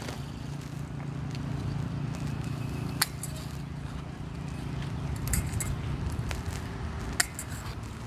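Hand pruners snipping the stems of a young muscadine grape vine: a few sharp clicks, the clearest about three seconds in and another near the end, over a steady low hum.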